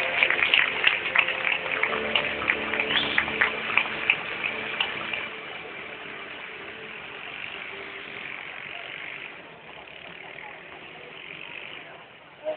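Audience applauding and cheering, with sharp, dense claps for the first five seconds or so, then dying away to a softer crowd murmur.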